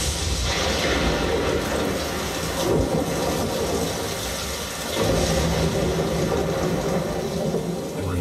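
Heavy rainstorm sound effects with a deep low rumble that swells about five seconds in, played back through a Sonos Arc soundbar home-theatre system with subwoofer and heard in the room.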